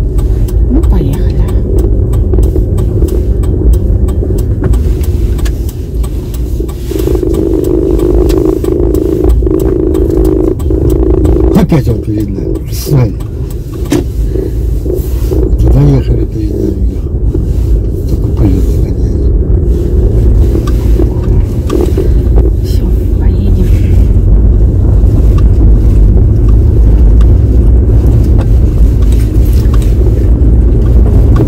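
Car engine and tyre rumble heard from inside the cabin while driving, a steady low drone. A steady hum rises above it for a few seconds about a quarter of the way in.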